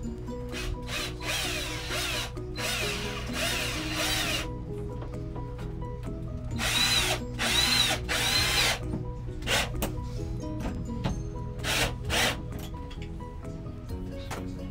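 Cordless drill/driver driving screws through a plastic shower-head holder into a shower wall. It runs in about eight short bursts, each rising and falling in pitch as the trigger is squeezed and released; the loudest bursts come around the middle.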